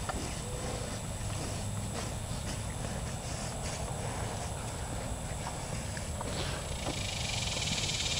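Faint scattered taps and clicks of cattle hooves and a dog's paws on a concrete pad, over a steady low outdoor rumble; a high hiss grows near the end.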